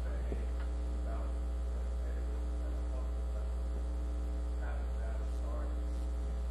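Steady electrical mains hum in the audio feed, with faint, distant off-microphone speech a few times.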